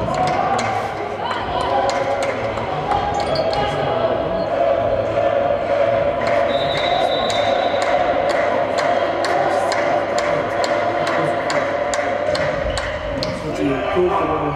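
Sports-hall noise during a volleyball match. Sharp knocks echo in the hall at an even rhythm of about two to three a second, over a steady wash of voices.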